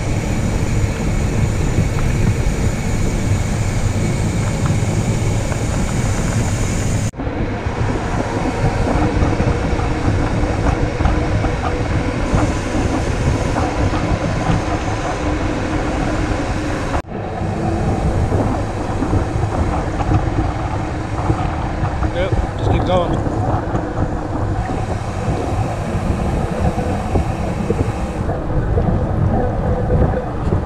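Steady rushing of wind on the microphone over the hum and rattle of a mountain bike's knobby tyres rolling on pavement. The noise breaks off sharply twice, about a third and about halfway through.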